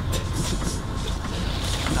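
A parked SUV's engine idling: a steady low hum with a hiss of noise over it.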